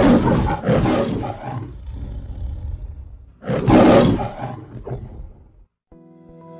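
Lion roaring twice, the MGM-logo style roar: one roar at the start and a second about three and a half seconds in.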